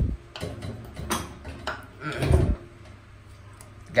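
Metal clicks and knocks of a latching filler cap on an aluminium aircraft oil tank being pushed in and pressed down to lock, the latch not yet seating. A few sharp clicks come in the first second and a half, then a duller knock a little after two seconds.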